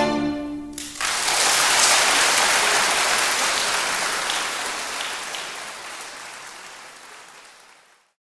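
A string quartet's last chord ends within the first second, then audience applause breaks out and gradually fades away.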